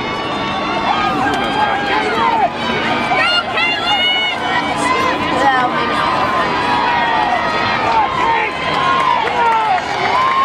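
A crowd of spectators calling out and shouting, many voices overlapping without a break, with drawn-out yells standing out around the middle.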